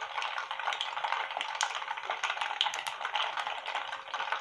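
Hot oil sizzling and crackling in a pan as something fries in it, a steady dense patter of tiny pops.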